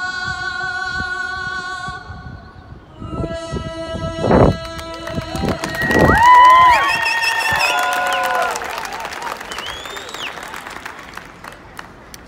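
A young woman singing the national anthem solo into a microphone, holding the last long notes with vibrato, then a ballpark crowd cheering, whooping, whistling and clapping as she finishes. There is a loud thump about four seconds in.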